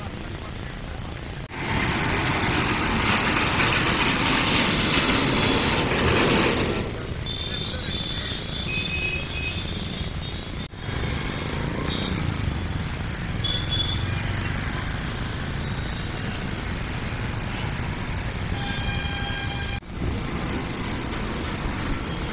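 Outdoor street ambience of traffic and background voices, in several short segments that change abruptly. A loud rushing noise fills the stretch from about 1.5 to 7 seconds, and a short high-pitched horn-like tone sounds near the end.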